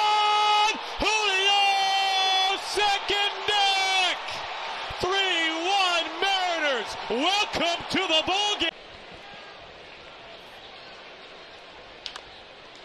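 Baseball broadcaster's excited home-run call, yelled in long, drawn-out held notes that bend up and down. It cuts off abruptly near the end, leaving a quieter ballpark crowd murmur.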